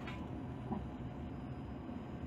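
Steady low machinery hum, with a faint click about three quarters of a second in.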